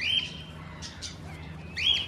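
A small bird calling: two short, high, arched chirps, one at the start and one near the end, with a couple of soft clicks between.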